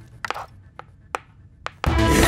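A handful of sharp clicks and taps of gold bars being handled and knocking together in an open suitcase. Loud music starts abruptly near the end.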